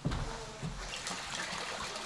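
Hot spring water pouring steadily from a spout into a pool, a continuous splashing trickle.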